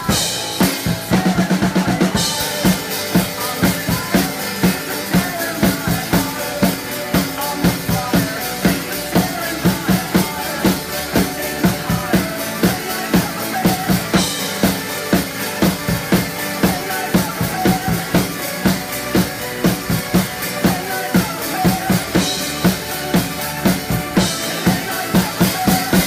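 Acoustic drum kit played over the song's backing track: a steady rock beat of kick, snare and cymbals, with a quick fill about a second in and crash cymbals marking the sections.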